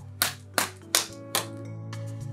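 Four sharp hand claps, a little under half a second apart, over background music with sustained tones.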